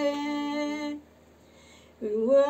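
An older woman singing a folk song unaccompanied, holding one long steady note for about a second, then breaking off for a short pause before the next line.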